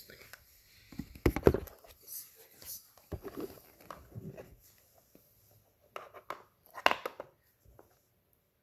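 Hands working plastic MC4 solar cable connectors, pushing and squeezing them to make them lock, close to the microphone: irregular clicks and rubbing of plastic and fingers. There are two louder clusters of knocks, about a second and a half in and near seven seconds.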